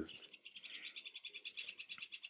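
Faint, steady, high-pitched trill of fast, even pulses from a calling animal in the background.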